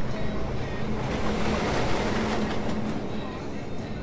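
Manta roller coaster train rushing along its steel track, a rushing rumble that swells through the middle and eases toward the end.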